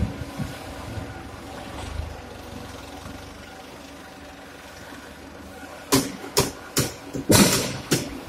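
Fly ash brick plant machinery and a tractor front loader running with a steady mechanical hum. In the last two seconds a quick run of about five or six sharp, loud knocks or clatters stands out above it.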